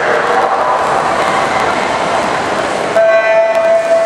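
Crowd chatter and calls at a swim meet, then about three seconds in the electronic starting system sounds its start signal: one loud, long, steady beep that starts a backstroke heat.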